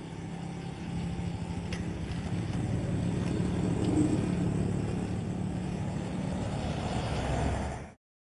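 A car engine running close by over road noise, getting louder toward the middle and then cutting off suddenly.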